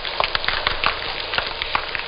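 Snapping shrimp recorded underwater: a dense, irregular crackle of sharp clicks, each one the snap of a shrimp's claw.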